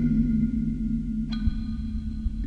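Experimental music of electronically processed marimbas. A struck note rings out at the start and a second strike follows a little past halfway, both over a low steady drone.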